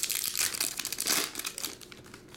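Foil wrapper of a trading-card pack crinkling as it is handled and opened. The crackling is busiest in the first second or so and thins out near the end.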